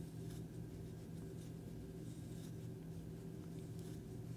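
Faint, soft rustling of super bulky acrylic-wool yarn being pulled through loops on a crochet hook while single crochet stitches are worked, over a steady low hum.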